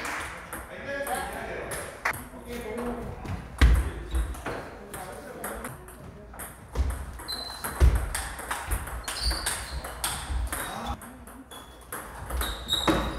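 Table tennis ball clicking against the table and paddles in a rally, many quick sharp ticks, with two louder thumps about four and eight seconds in.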